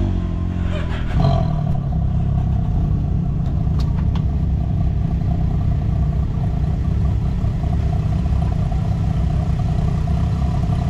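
1000cc UTV engine under throttle, revving up over the first second or so, then running steadily at speed. A couple of light clicks come about four seconds in.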